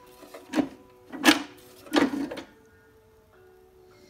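Recoil starter rope on a 1960s International Harvester (Lawn-Boy-type) mower pulled three times in quick succession, each pull a short zip, with a faint steady tone lingering on after the last pull. The starter is faulty: the pinion spring that pushes its gear into the flywheel needs replacing.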